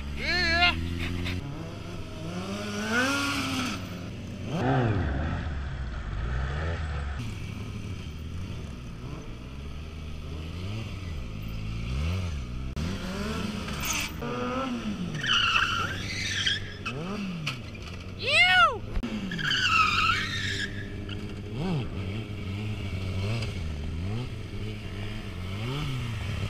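Sport motorcycle engines revving up and dropping back again and again while the bikes are ridden in stunts such as stoppies and wheelies. The rev sweeps come at irregular intervals, the loudest about two-thirds of the way through.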